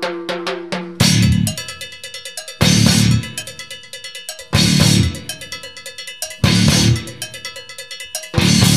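Nu-metal band demo recording. It opens with a quick run of repeated pitched notes. About a second in, the full band comes in with heavy hits that recur about every two seconds, and the drums keep a fast, even pulse between them.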